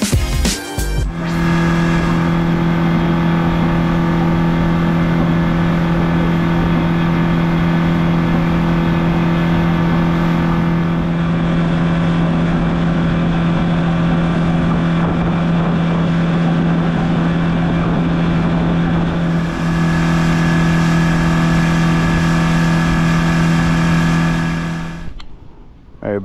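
Yamaha outboard motor running at a steady cruising speed: a loud, constant hum that holds one pitch, fading out about a second before the end.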